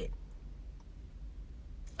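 Quiet pause inside a car cabin: a low steady hum with a faint tick or two.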